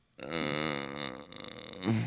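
A man's drawn-out, hesitant "uhhh", held at a steady low pitch for about a second and then trailing off.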